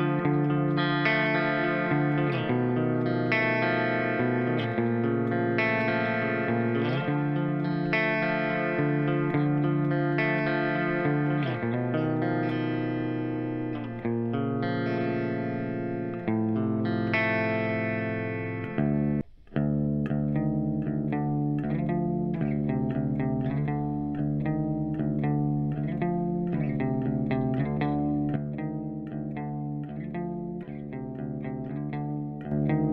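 Clean-toned electric guitar played through an amp and recorded by a Comica STM01 large-diaphragm condenser microphone placed at the amp's speaker. Sustained chords change about once a second, the sound drops out briefly about two-thirds of the way through, and then a run of quicker picked notes follows.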